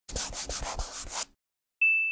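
Sound effects of an animated logo intro: a quick run of about five noisy strokes, roughly four a second, then, after a short gap, a single bright chime near the end that rings on and fades.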